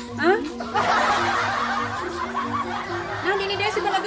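A burst of laughter from several voices at once, starting about a second in and fading after a couple of seconds, over steady background music.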